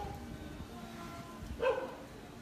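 A single short dog bark, about one and a half seconds in, over faint steady background tones.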